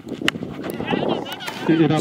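A single sharp crack of a taped tennis ball struck by a cricket bat about a quarter second in, followed by shouting voices and then a man's commentary near the end.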